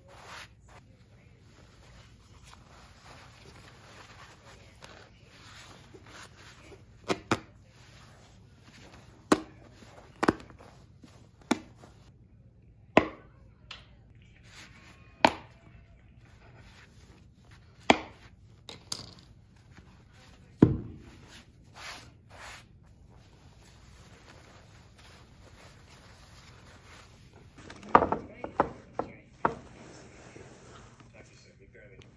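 Old upholstery staples being pried and pulled out of a wooden footstool seat with hand tools: scattered sharp clicks and snaps, a dozen or so through the middle, then a quick run of them near the end.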